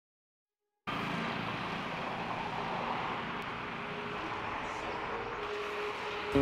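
A steady rushing noise, even and without clear tones, cuts in suddenly about a second in after silence. A faint steady hum tone joins it near the end.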